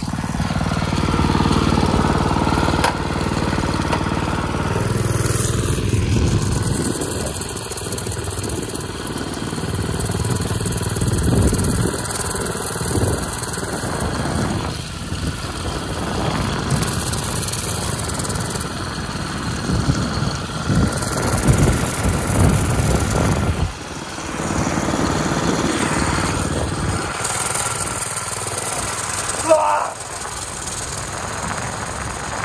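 A small engine runs continuously under a ridden vehicle. It is steady and pitched at first, then rougher and noisier for the rest of the ride.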